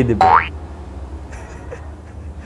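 A comedic "boing" sound effect: a short, loud pitch glide rising steeply, a quarter of a second in, over a steady low hum.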